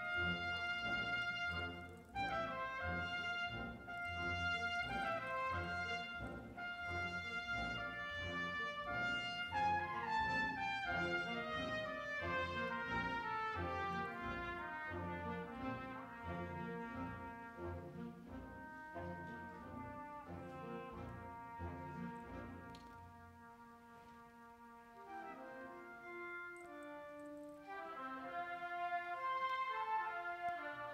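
Symphonic band playing a brass-led passage over a steady low pulse. A little over twenty seconds in it thins to a quiet held chord, then swells again near the end.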